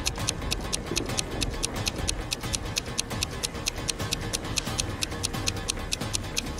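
Countdown stopwatch ticking, rapid and even at several ticks a second, over background music.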